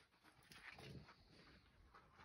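Faint scuffing of two dogs' paws in the snow as they play, with a few soft crunches about half a second in.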